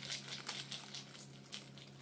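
Faint patter of seeds shaken from a small glass jar onto soft bread dough in a loaf tin, a few soft ticks over a low steady hum.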